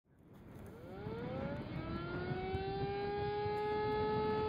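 Outdoor tornado warning siren winding up: a tone that fades in, rises in pitch over about two seconds and then holds steady, over a low rumble.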